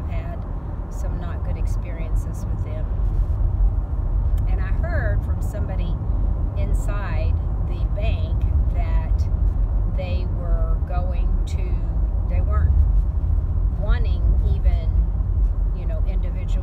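Steady low road and engine rumble heard inside a moving car's cabin, with a woman's voice talking at intervals over it.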